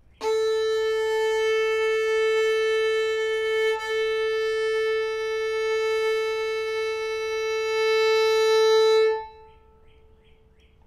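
Violin's open A string bowed as one long, steady reference note for tuning by ear, with one bow change about four seconds in. The note stops about nine seconds in and rings on faintly.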